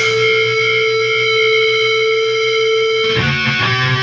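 Black metal recording: a distorted electric guitar holds one sustained chord, then moves to a new chord about three seconds in.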